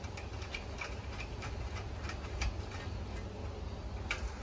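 Light, irregular clicks and taps, a few a second, from metal parts being handled as the cap and spring are pressed back into a propane patio heater's valve housing, over a low steady rumble.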